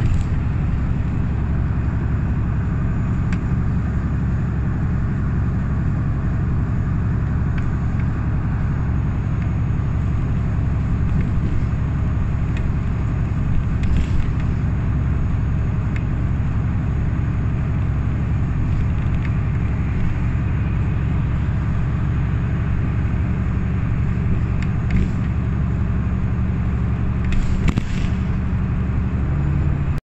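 Ride noise inside a city bus cruising at steady speed: engine drone and tyre and road rumble, with a few short clicks or rattles about halfway through and again near the end.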